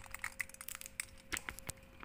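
Irregular run of small sharp clicks and crackles, handling noise from the camera being picked up and repositioned.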